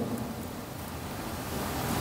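Steady background hiss of room noise, swelling slightly toward the end.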